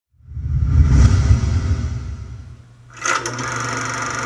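Production-logo sound effect: a deep whoosh swells up, then fades over about two seconds. About three seconds in a sudden hit opens into a steady droning tone.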